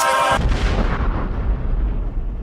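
Hip-hop outro music cuts off about half a second in, giving way to a deep boom-like rumble that slowly fades away.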